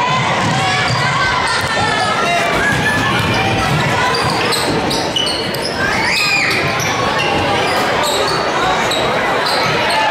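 A basketball being dribbled on a hardwood gym floor, with players' shoes squeaking and a crowd talking and calling out. Short high squeaks come thick from about four seconds in.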